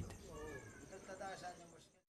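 Faint, indistinct voices of people talking, well below the level of the narration, fading to silence just before the end.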